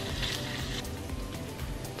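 Garlic, parsley and anchovies sizzling gently in olive oil as a wooden spoon stirs them in the pan, the sizzle fading about a second in. Background music plays throughout.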